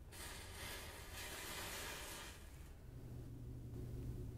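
A paper match flaring and burning with a soft hiss for about two and a half seconds. A low steady hum comes in near the end.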